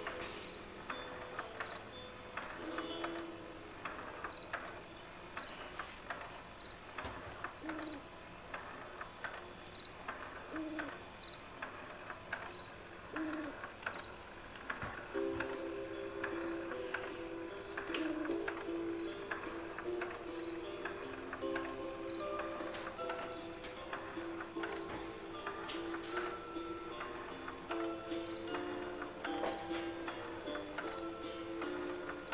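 Baby swing's built-in sound unit playing a nature track of evenly repeating electronic cricket chirps, with a soft low hoot every few seconds. About halfway through, a simple lullaby melody joins in.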